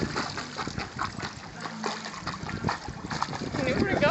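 Water splashing and sloshing as a small animal paddles through shallow water, a run of quick, irregular splashes.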